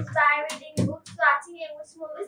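A girl speaking in English, her sentence running on in short phrases.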